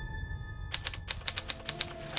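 Manual typewriter keys striking in a quick, uneven run of about a dozen clicks, starting under a second in.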